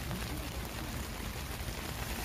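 Snow falling on the tent fabric, heard from inside the tent as an even, steady hiss that sounds like light rain.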